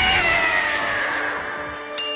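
Anime sound effect: one long pitched tone gliding down and fading away as the punched creature is flung off into the distance.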